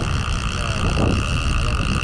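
Spinning reel's drag screaming as a big fish strips line off, a steady high whine over wind rumble on the microphone. The run is long enough that the angler fears being spooled; the fish is taken for a big shark.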